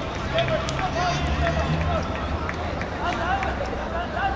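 Shouts and calls of football players and spectators around an outdoor pitch, short scattered voices rather than continuous talk, over a steady low rumble.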